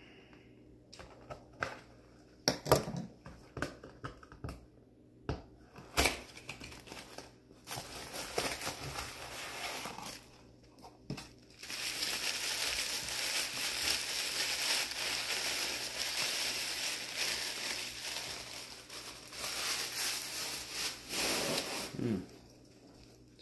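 A small cardboard box being handled and opened, with scattered clicks and brief rustles. About halfway through, white paper wrapping is crumpled and crinkled steadily as a mineral specimen is unwrapped from it.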